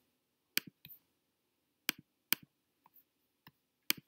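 Computer mouse clicking: several sharp single clicks at irregular intervals, the loudest about half a second in, around two seconds in and near the end.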